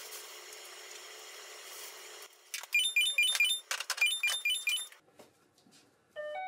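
An electronic toaster oven plays a short beeping tune twice as it is set, with clicks from its door and buttons. Before that, a steady hum cuts off about two seconds in.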